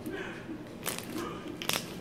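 Sticky slime being squeezed and poked in a plastic tub, giving a few sharp clicks and crackles as trapped air pops: one about a second in and a small cluster near the end. It is a weak slime crunch, "not so good".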